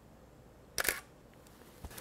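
Canon EOS 5D Mark II digital SLR taking a single shot: one quick double click of mirror and shutter about a second in.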